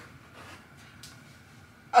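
Faint rustling of clothing as a woman tugs at the waistband of a skort she has just put on, then a loud laugh from her right at the end.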